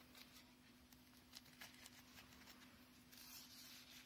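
Near silence: faint soft ticks and rustles of satin ribbon being handled and gathered onto a needle and thread, with a soft hiss near the end as the thread is drawn through the ribbon, over a low steady hum.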